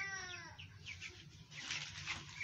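Young broiler chickens peeping in short high chirps, with one longer call that rises and falls in pitch at the start.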